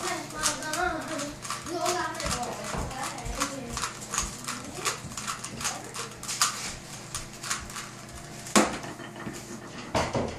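A Rubik's cube's plastic layers clicking as they are turned by hand, a rapid run of small clicks, ending with one louder knock about 8.5 seconds in as the solved cube is put down on the table.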